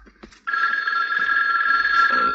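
Telephone bell ringing: one long ring on a few steady tones, starting about half a second in.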